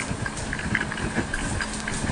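Livescribe smartpen tip scratching across notebook paper while a word is written, picked up close by the pen's own microphone, with a light steady hum under it.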